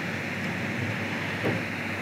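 Steady background hiss of room noise, with a faint brief sound about one and a half seconds in.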